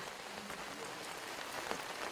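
A steady, faint hiss of background noise with no voice.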